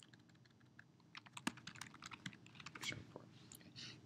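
Faint typing on a computer keyboard: a run of quick keystrokes, starting about a second in.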